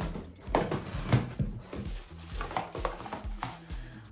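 Several light knocks and rustles of cosmetic bottles and packaging being picked up and handled, over quiet background music.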